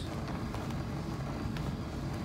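Steady low rumble of room noise, with a few faint knocks from feet landing during sideways jumps over a low stack of weight plates.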